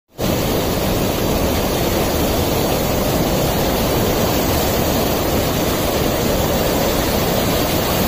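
A river in flood, its muddy water rushing in a loud, steady roar with no letup.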